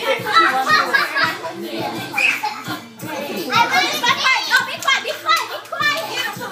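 Several children shouting, laughing and talking over one another during rowdy play, with a short lull about halfway through.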